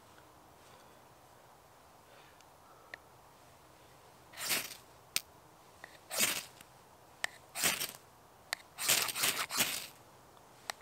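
The 90-degree spine of a stainless Morakniv Bushcraft knife struck down a ferrocerium fire-steel rod, a series of short scrapes starting about four seconds in and coming faster near the end, throwing sparks onto fine wood shavings to light a fire.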